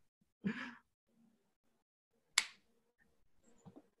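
A short breathy sigh near the start, then one sharp click about two and a half seconds in, with faint small sounds near the end.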